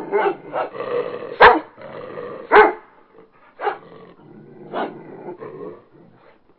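A dog growling and barking, with short sharp barks about a second apart, loud at first, then fainter after about three seconds.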